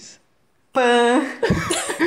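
A person's voice lets out one drawn-out vocal sound at a steady pitch after a brief silent gap. Near the end, several voices start overlapping in talk and laughter.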